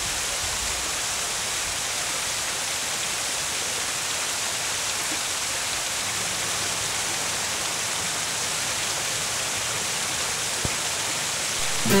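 A steady, even rushing hiss that holds at one level. It gives way to music and a shout of "Yeah!" right at the end.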